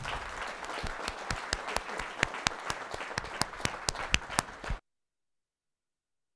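Audience applauding, with many individual claps heard over a steady patter. About five seconds in, the sound cuts off abruptly.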